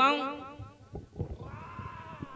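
A man's loud vocal cry with a rapidly wavering, quavering pitch through the stage microphones, cutting off just after the start. It is followed by a few soft knocks on the stage floor and a faint held tone.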